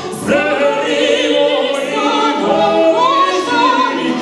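Operatic singing with a wide vibrato over a symphony orchestra.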